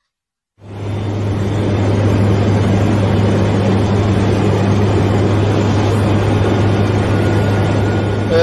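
Supermarine Spitfire's piston aero engine running steadily in flight: a loud, even drone with a strong low hum, starting suddenly about half a second in.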